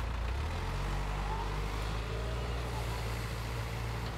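Steady low engine hum of a motor vehicle running, its pitch shifting slightly about half a second in.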